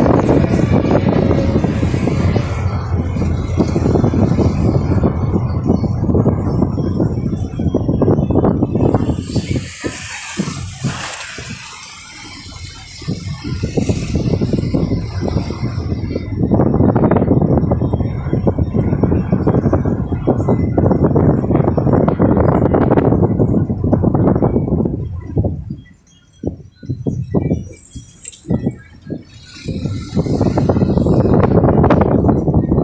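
Road and wind noise of a moving vehicle, loud and steady, easing off twice as the vehicle slows.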